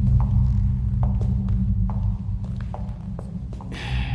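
Low, steady droning background score that fades over the few seconds, with a string of light taps at about two a second on top of it.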